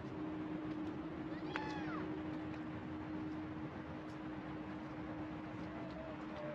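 A single short mewing animal call about one and a half seconds in, over a steady low hum.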